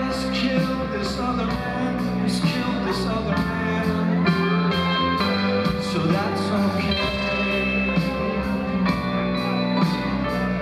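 Rock band playing live, with a male lead voice singing over sustained chords and a steady drum beat.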